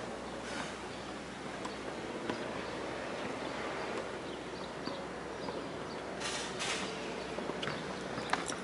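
Steady outdoor background noise with a few faint scattered clicks, and two short hisses close together about six seconds in.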